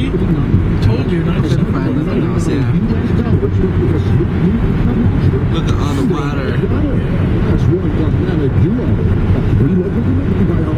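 Steady road and engine noise inside a moving car's cabin, with indistinct voices talking over it.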